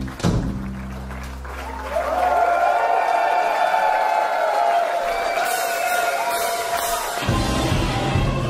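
Live blues-rock band: a hit on drums and bass, then a held low note fading while sustained high notes ring out over a sparse break, before the full band with electric guitar, bass and drums comes back in about seven seconds in.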